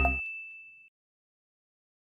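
A single high chime rings on and fades away within about a second as the intro music cuts off just after the start. Then there is silence.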